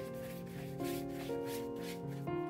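Rubbing strokes across wet sketchbook paper, about three a second, as acrylic ink is worked into the pages, over background music with held notes.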